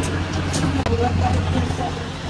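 A steady low hum with faint voices in the background, and a couple of light clicks from clothes hangers being moved along a clothing rail.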